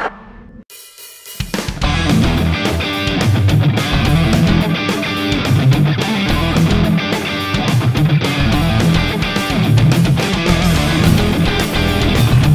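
Instrumental rock track: electric guitar playing over a full drum kit with bass drum, hi-hat and cymbals, starting after a brief quieter gap at the opening.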